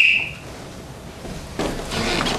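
A short, shrill whistle blast on one steady high note that stops about half a second in, then a quieter noisy stretch with another sound coming in near the end.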